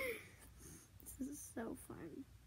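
A young girl giggling quietly in short, breathy bursts, one at the start and a few more in the second half.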